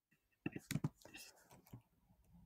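Faint whispered speech, with a few sharp clicks in the first second.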